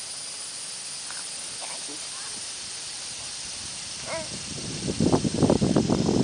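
Wood-chip mulch rustling and crackling as it is handled, a dense patch of crackle starting about five seconds in, over a steady outdoor hiss. A few faint short chirps come earlier.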